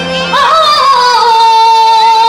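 A woman singing live through a stage PA sweeps up into a long, high held note about a third of a second in, with a slight waver in the pitch, over the band's accompaniment.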